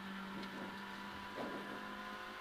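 Suzuki Swift rally car's engine heard faintly inside the cabin as a steady hum, which weakens about one and a half seconds in.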